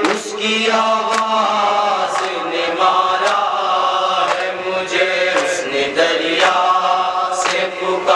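A noha, a Shia Muharram lament in Urdu, chanted by voices in a slow drawn-out melody, with a sharp beat about once a second keeping time.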